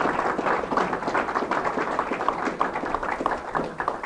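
Audience applauding: many hands clapping in a dense, even patter that eases off near the end.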